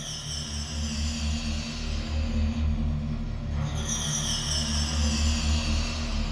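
Dramatic background score: a low pulsing drone under two whooshing sweeps that fall in pitch, the second starting a little past halfway.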